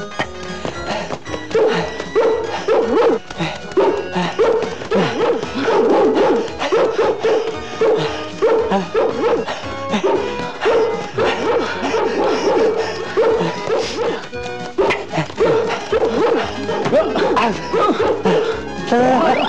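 A dog barking repeatedly, about twice a second, over background music.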